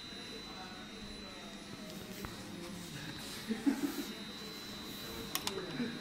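Faint, indistinct voices in a small room, with a thin steady high-pitched tone underneath and a few light clicks, one about two seconds in and a pair near the end.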